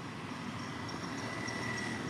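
Steady outdoor background noise: a low rumble under a thin, steady high whine that swells slightly near the end, with faint regular chirps above it.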